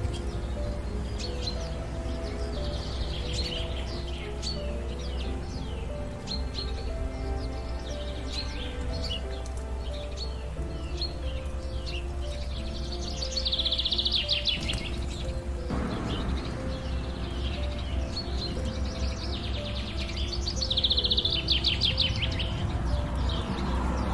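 Small songbirds chirping all through, with two fast, dense trills, one near the middle and one near the end.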